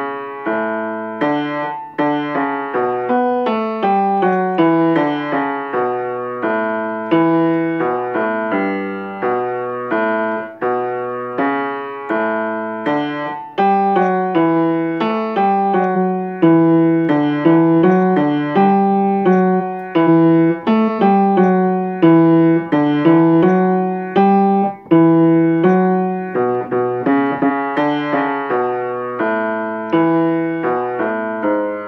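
Upright piano playing the bass line of a choral hymn as a rehearsal part: a steady, unbroken succession of low and middle notes, each struck and then fading.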